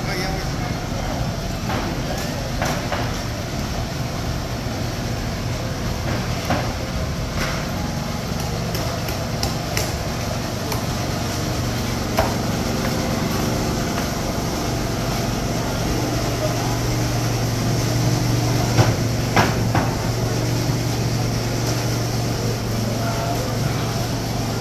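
Covered market ambience: voices of vendors and shoppers over a steady low hum that grows louder in the second half, with scattered sharp knocks and clatters, the loudest two coming in quick succession near the end.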